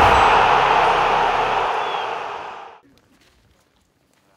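Hissing TV-static sound effect of a channel logo sting, with the low end of its music dying away. The static fades out a little under three seconds in, leaving only faint background sound.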